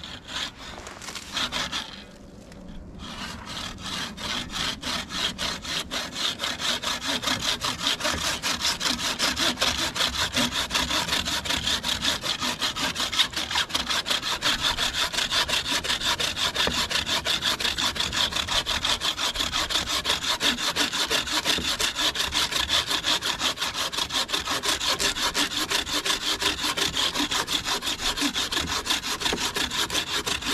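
Wooden-framed bucksaw with a 21-inch Bahco dry-wood blade cutting through a thick branch of a fallen tree in fast, steady back-and-forth strokes, with a brief pause about two seconds in.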